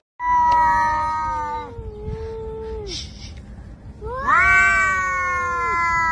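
Cat yowling in two long, drawn-out calls, the first sagging in pitch and the second starting about four seconds in: a standoff between two cats at their food.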